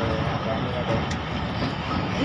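Awam Express passenger train running, heard from inside a coach: a steady rumble of the wheels on the track, with people's voices over it.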